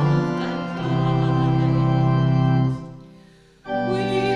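Church organ holding a chord at the close of a hymn verse, dying away into a short pause about three seconds in. The organ then comes straight back in with the opening chord of the next verse.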